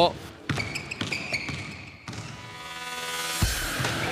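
Basketball being dribbled on a hard court floor: a handful of sharp bounces, irregularly spaced, heard over background music.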